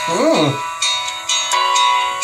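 Christian pop song playing: a voice sings the drawn-out word "better", falling in pitch, near the start, over sustained keyboard chords and a light beat.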